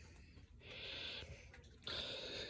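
A faint short breath, a hiss of about half a second near the middle, with quiet on either side.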